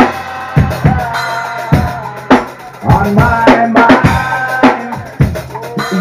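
Live rock band playing a quieted-down passage of the song: drum kit strikes with held pitched notes from bass and guitar.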